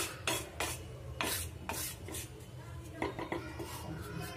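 Wooden spatula scraping and stirring dry gram flour (besan) across a pan, in quick, irregular strokes.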